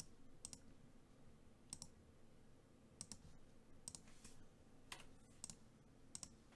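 Faint computer mouse clicks, mostly in quick pairs about every second, over near silence.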